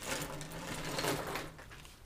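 Plastic bag crinkling as a bagful of plastic markers is tipped out, the markers clattering onto a wooden table.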